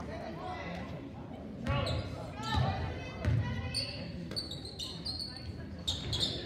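A basketball dribbled on a hardwood gym floor, a few heavy bounces about a second apart, with voices and short high sneaker squeaks echoing in the gym.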